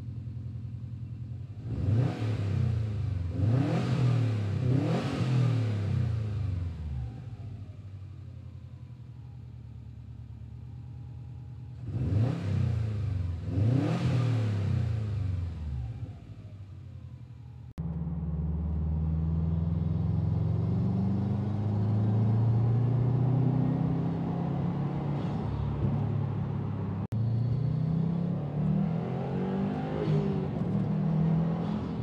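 2018 Subaru STI's turbocharged 2.5-litre flat-four, with a newly fitted AEM cold air intake, idling and then revved in several quick throttle blips, a cluster about two seconds in and another pair about twelve seconds in. About eighteen seconds in the sound changes abruptly to a louder, steadier engine note whose pitch wanders slowly.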